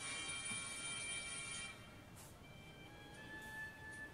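Ringing musical tones: a bright, many-pitched tone starts suddenly, fades away over about two seconds, and a single steady higher tone comes in about three seconds in.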